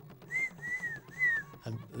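The rain bird's call: three clear whistled notes in a row, each rising and falling in pitch.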